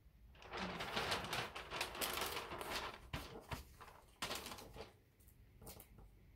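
Wrapping paper crinkling and rustling as it is handled and folded around a box: dense crackling for about four seconds, then a few lighter rustles near the end.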